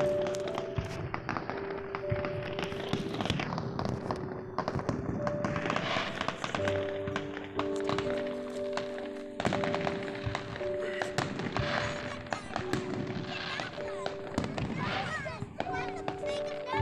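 Distant aerial fireworks crackling and popping, many sharp reports one after another, over music with held notes that step from one to the next.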